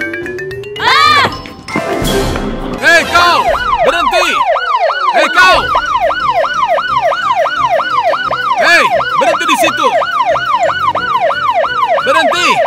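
Police siren in a fast yelp, its pitch rising and falling about three times a second, starting about three seconds in. Before it, a brief loud noise burst near two seconds.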